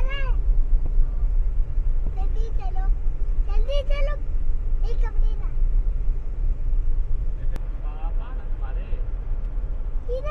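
Low, steady rumble of a car heard from inside it, with short phrases of a high-pitched voice talking over it now and then.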